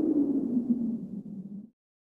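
The tail of an electronic intro jingle: a single low, slightly wavering tone that fades and then cuts off suddenly near the end.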